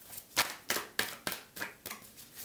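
A deck of tarot cards being shuffled by hand, the cards slapping together in short strokes about three times a second.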